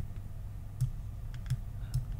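Computer mouse clicking: about five separate, irregularly spaced clicks over a faint low steady hum.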